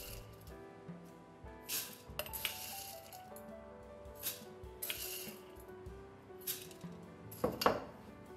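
Dry popcorn kernels poured into a 3D-printed hot-air popcorn maker, rattling in about six short spills, the loudest near the end. Soft background music plays underneath.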